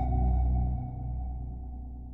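The closing sustained synth note and deep bass of a vocal dubstep track dying away as the song fades out. The bass drops off about a second in, and the whole sound keeps getting quieter.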